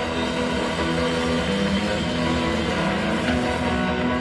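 Live blues-rock trio playing: electric guitar over electric bass and a drum kit, with held guitar notes throughout.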